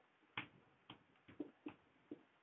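Marker pen writing digits on a whiteboard: four brief, faint ticks as the tip strikes the board.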